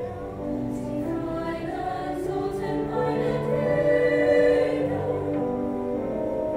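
High school choir singing long held chords in several parts, swelling louder about four seconds in.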